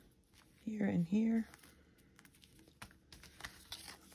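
A short wordless two-part voiced sound, like a hum or "uh-huh", about a second in, followed by faint crinkling and rustling of paper envelopes and fabric tab strips being handled.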